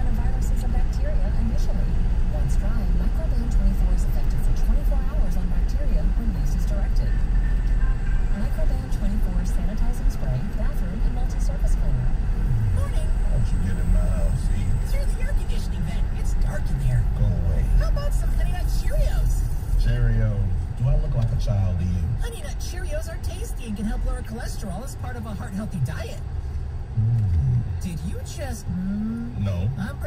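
Radio speech from the car's audio system, heard inside a moving car's cabin over a steady low road and engine rumble. The rumble drops off in the last third as the car slows to a stop in traffic.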